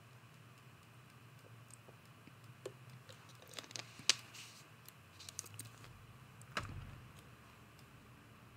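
Faint, scattered clicks and crinkles of a thin plastic water bottle being handled and its cap worked, with a soft thump late on.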